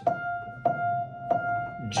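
Grand piano: a single high F struck three times with the right hand, about two-thirds of a second apart, each note ringing until the next.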